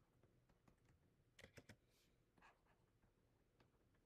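Near silence with a few faint clicks and taps, a quick cluster of them about a second and a half in: a stylus tapping on a tablet while handwriting.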